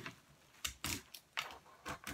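Plastic wrapping being picked at and pulled off a clear plastic stacking drawer by hand: about five short, faint crackles and clicks.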